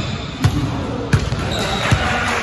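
Basketball dribbled close by on a hardwood gym floor, bouncing three times at a steady pace of about one bounce every 0.7 seconds.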